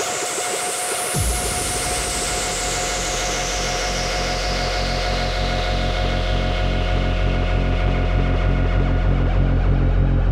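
Electronic dance music: a high sweep rises to a peak about a second in, where a heavy bass line drops in under a steady pulsing beat, and the sweep then falls slowly.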